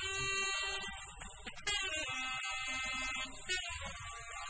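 Small jazz group playing: a saxophone holds a string of long notes over piano, acoustic bass and drum cymbals.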